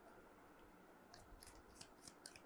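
Near silence, with a few faint, short rustles and clicks in the second half as a deck of tarot cards is handled.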